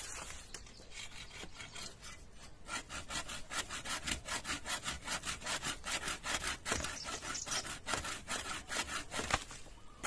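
Bow saw cutting through a bamboo culm near its base, in quick regular back-and-forth strokes about three a second. The strokes are light and uneven at first and become louder and steadier a couple of seconds in, stopping just before the end.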